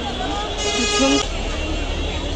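A vehicle horn gives one steady toot of a little under a second, about half a second in, over the chatter of a crowd.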